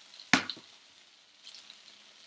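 Chopped onions and garlic sizzling faintly in oil in a frying pan, with one sharp knock about a third of a second in.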